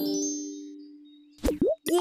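A held musical tone fading away, then two quick cartoon pop sound effects with swooping pitch about one and a half seconds in.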